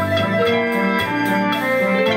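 Instrumental backing music: electronic keyboard chords held over a steady beat, with ticks about four a second.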